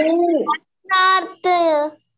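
A child's voice over a Zoom call, calling out in a sing-song way: a short phrase, then two long drawn-out notes, the second falling slightly.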